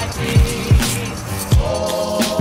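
Background music with a beat of deep kick drums that drop sharply in pitch, about three in these two seconds, under sustained notes.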